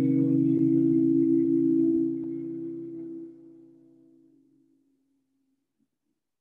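Several people making the steady nasal bee-like hum of Bhramari pranayama on a long exhalation, their voices held at a few different low pitches. About two seconds in the hum starts to fade in steps as the breaths run out, and it is gone by about five seconds.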